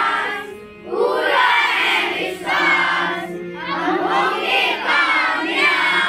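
A group of young children singing a song together, phrase after phrase, with a short breath pause about a second in.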